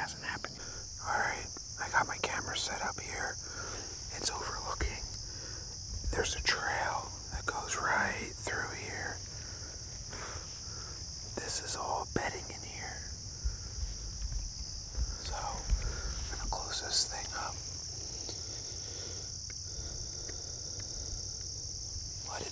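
A man whispering in short phrases over a steady, high-pitched drone of insects.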